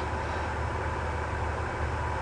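Steady background hiss with a low hum and a faint thin tone, with no distinct sound event: the room tone of a small room during a pause in speech.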